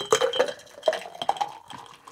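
Shaken cocktail and its ice dumped from a metal shaker tin into a ceramic tiki mug: ice clinking and rattling against the tin and mug, with liquid splashing. It is loudest at the start and tapers off in the second half as the tin empties.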